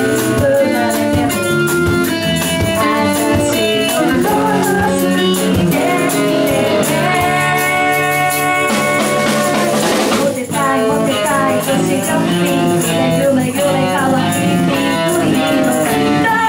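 Live band playing a pop-rock song: a woman singing over acoustic guitar, electric guitar, bass and drums, with a short break about ten seconds in before the band comes back in.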